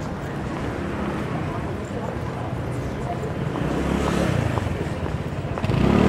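Busy street ambience: a steady hubbub of many passers-by's voices mixed with general city noise, growing a little louder toward the end.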